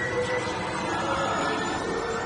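Steady running noise of a Space Ranger Spin dark-ride vehicle moving along its track through the show scene, mixed with the ride's effects audio and a held high tone.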